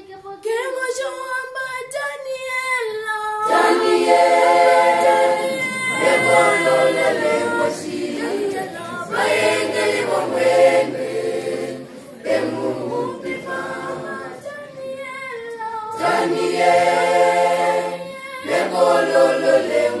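Choir singing a Namibian gospel song without instruments. A single voice leads for the first few seconds, then the full choir comes in about three and a half seconds in, singing in harmony with low voices beneath, in phrases with short breaks between them.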